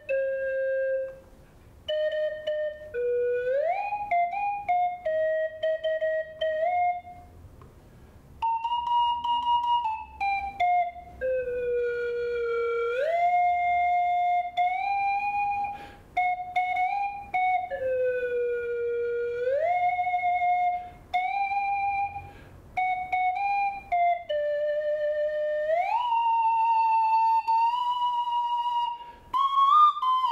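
Plastic slide whistle playing a melody: held notes joined by smooth upward and downward glides, in phrases broken by short pauses.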